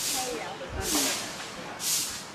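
Short hissing puffs of air, about one a second, each with a low thump as it hits the microphone, with a voice speaking between them.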